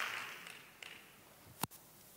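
Audience applause dying away over the first second, then a single sharp click about one and a half seconds in.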